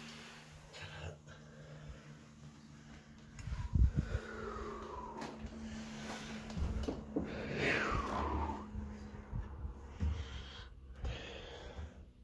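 Old wooden cupboard door creaking on its hinges as it is opened, giving two drawn-out falling squeals, with a thump about four seconds in.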